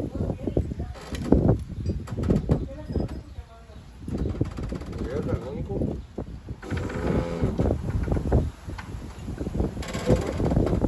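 People talking, their words indistinct.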